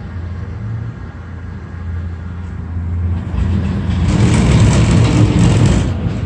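Cable car cabin in motion: a steady low hum, then a loud rumbling and rattling that builds from about three seconds in and cuts off sharply at the very end.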